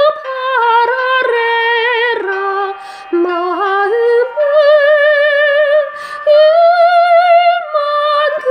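A woman's high soprano voice singing a Korean art song, holding long notes with wide vibrato, with short breaths about three and six seconds in.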